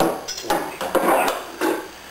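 Metal rudder hardware being handled: a stainless pintle rod and its gudgeon fittings clinking and knocking together in a string of short clicks and rattles.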